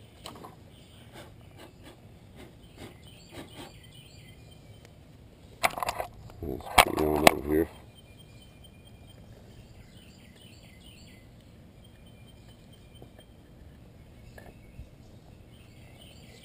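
Quiet yard ambience with faint bird chirps. About six seconds in, a brief loud rustle is followed by a man's short wordless exclamation that wavers in pitch.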